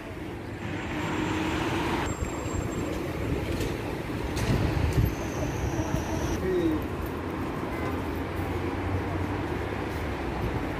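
City street traffic: a steady rumble and hiss of cars driving past.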